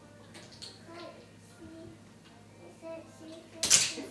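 Faint voices in the room, then near the end a single short, loud clatter.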